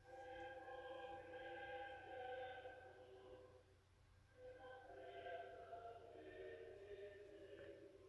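Faint choral music, a cappella voices holding slow, sustained chords, with a brief lull about halfway.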